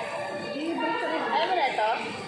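Indistinct talk and chatter of people in a restaurant dining room. One voice rising and falling stands out more clearly in the second half.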